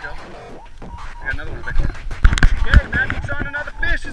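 Indistinct voices of people talking, with a few loud low knocks or bumps about two to three seconds in.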